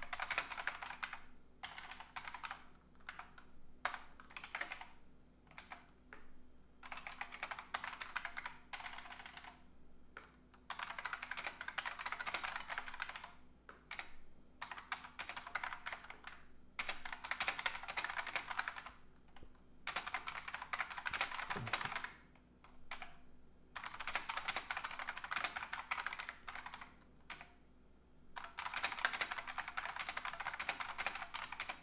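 Typing on a computer keyboard: rapid runs of key clicks lasting a few seconds each, broken by short pauses.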